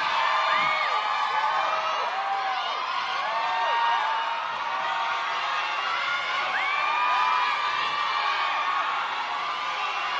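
A large audience cheering and screaming, with many high voices rising and falling over one another.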